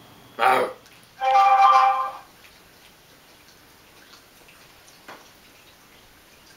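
A brief voice sound, then a steady electronic tone or chord of about a second, followed by faint scattered clicks.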